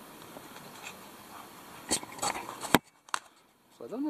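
A plastic air-intake pickup tube being handled: a faint rustle, then a few sharp plastic clicks from about two seconds in, the third the loudest.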